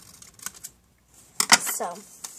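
Blue-handled scissors snipping through a folded strip of paper, a few soft clicks, then a single loud sharp knock about one and a half seconds in.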